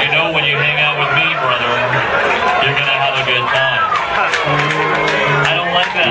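Live band music with held low notes that change about every second, breaking off briefly twice, and voices talking over it.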